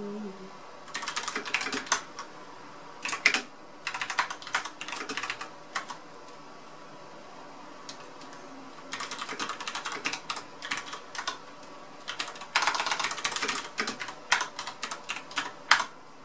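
Computer keyboard being typed on in quick bursts of key clicks, separated by pauses of a second to a few seconds, with a few single louder keystrokes.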